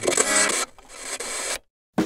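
A buzzing, static-like electronic transition effect that thins out to faint hiss and then cuts to dead silence for a moment near the end.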